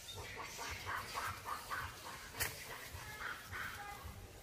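Rhesus macaque biting and chewing a ripe papaya, a run of short wet chewing sounds about four a second, with a sharp click a little past halfway.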